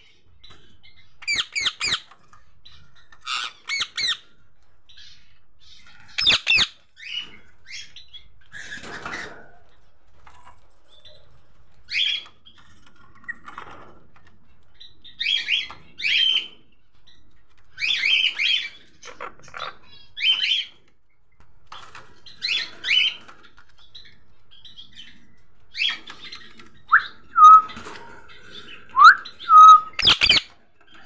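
Caged Indian ringneck parakeets calling: short, shrill calls come every second or two, some in quick pairs, and near the end there are two rising whistles.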